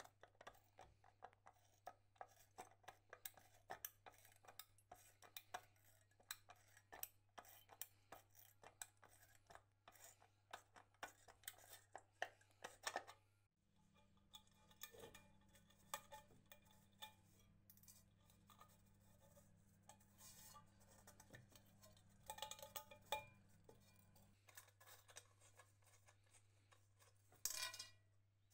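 Faint small metallic clicks and light scraping as a nut driver unscrews the terminal nuts at the base of an old electric heater's element, with the small metal parts handled against its metal reflector bowl. There is a louder run of clicks near the end.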